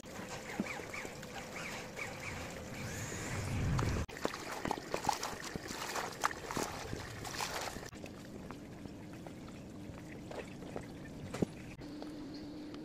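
Cloth face masks being hand-washed in a plastic basin of detergent water: water sloshing and splashing with small trickles as hands rub and squeeze the fabric. The splashing is busiest in the middle and quieter near the end.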